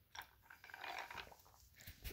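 Faint sips of iced sweet tea drawn through a metal straw, a few short soft sounds.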